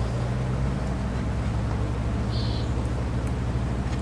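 Mastercraft 7-inch wet tile saw running with no load, a steady low hum, before the blade meets the ceramic tile. A brief faint high chirp a little past halfway.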